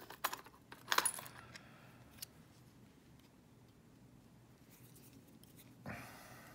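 Small metallic clicks and clinks from handling a Euro lock cylinder and its pin-retaining tool. There are a few in the first second or so and one more around two seconds, then a soft knock near the end.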